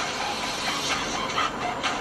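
Steady road and engine noise heard inside a car's cabin while it drives along a highway at moderate speed.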